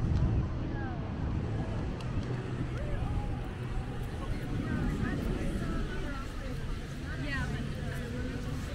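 Busy outdoor ambience: nearby people talking over a low, steady engine rumble, with scattered short chirps.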